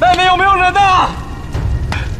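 A man shouts once for about a second, a call for anyone outside, over a low rumble. A sharp click comes near the end.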